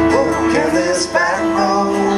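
Acoustic guitar playing a country-style song live, with a man singing.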